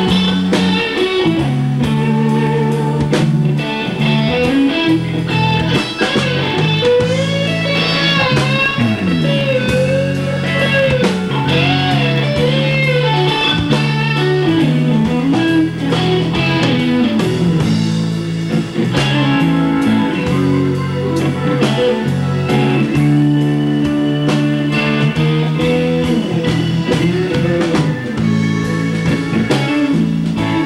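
Live blues band playing an instrumental break: an electric guitar plays a lead with bent and wavering notes over a steady bass line and a drum kit.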